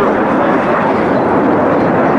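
Jet engines of a Boeing 737 and ten F-16 fighters flying over in formation: a loud, steady, even jet noise.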